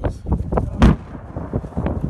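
A single loud boom about a second in as a giant 1,268 kg aerial firework shell is launched from its mortar by the lift charge, followed by a lower rumble.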